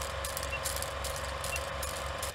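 Film-projector sound effect under a countdown leader: a steady mechanical whirr and hum with scattered crackle and clicks, and two faint short beeps a second apart.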